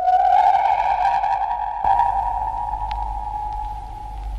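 Eerie held synthesized tone, a radio-drama music sting. About two seconds in, a low rumbling noise joins it, with a few faint crackles.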